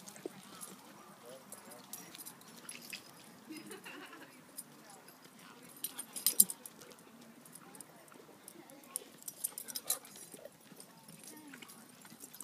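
Dog-park ambience: dogs moving about on mulch ground, with scattered scuffs and sharp clicks, a louder cluster of them about six seconds in, and faint voices in the background.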